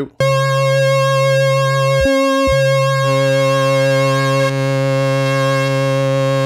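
Moog Sub 37 analog monosynth holding one sustained note. Oscillator two is being brought up in the mixer alongside oscillator one, and a second tone joins the note about three seconds in. The sound briefly changes just after two seconds.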